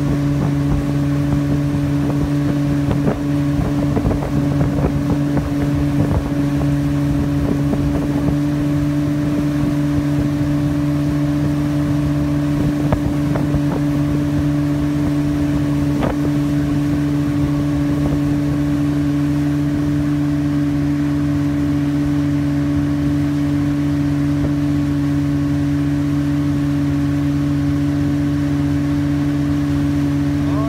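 Motorboat engine running steadily at towing speed, a constant, even drone, with wind and water noise on the microphone. The wind buffets a few times in the first several seconds.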